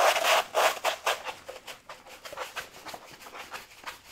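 A sheet of sandpaper being rolled back up onto a wooden roller, its backing rustling and scraping over the table; loudest in the first second, then fainter.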